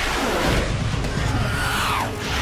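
F-35 fighter jet passing low and fast: a loud rushing jet roar whose pitch sweeps down and then back up as it goes by.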